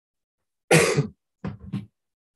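A person coughing: one loud cough, then two shorter, quieter coughs about half a second later.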